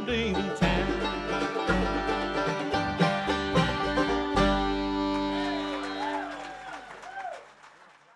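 Bluegrass band playing the closing notes of a song on banjo, mandolin and acoustic guitar. About four seconds in, it lands on a final chord that rings and fades away.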